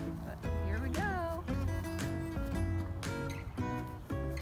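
Background music with a singing voice over a steady beat.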